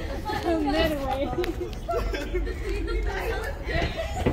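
People talking indistinctly, voices overlapping now and then, over a steady low rumble.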